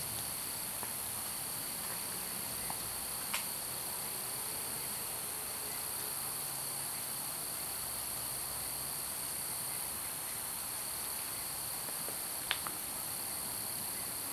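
Steady, high chorus of crickets at night, unbroken throughout. Two sharp clicks cut through it, one about three seconds in and one near the end.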